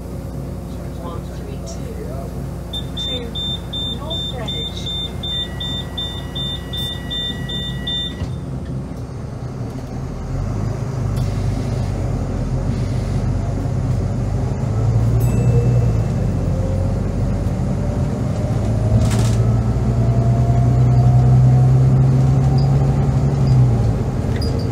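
Volvo B9TL bus's diesel engine heard from inside the saloon, pulling hard under acceleration, growing louder about ten seconds in, with a whine that rises slowly in pitch as the bus gathers speed. Early on, a rapid high electronic beeping repeats for about five seconds.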